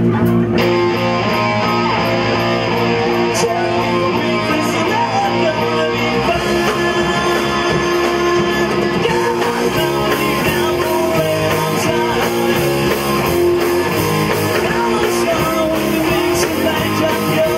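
Live rock band playing: electric guitars and bass over drums, loud and continuous.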